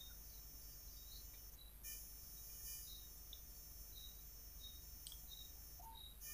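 Near silence: faint room tone with a steady low hum and a few faint, short high-pitched chirps.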